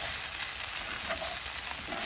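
Chicken fried rice sizzling in a stainless-steel skillet as it is stirred and mixed with a spatula: a steady hiss with faint scrapes and ticks of the spatula against the pan.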